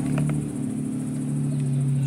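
A steady, low mechanical hum holding one pitch, with a faint high buzz above it.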